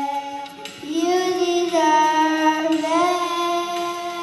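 Children singing a song into handheld microphones, holding long notes and sliding up between them, with a short break about half a second in.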